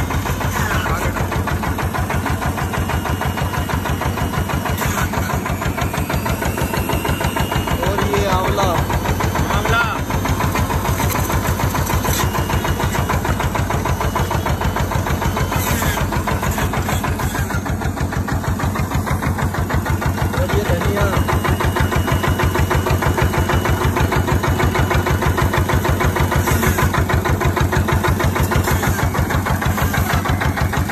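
Stationary single-cylinder diesel engine running steadily with a rapid, even chug. An electric juicer motor runs underneath as carrots and beetroot are pressed into it.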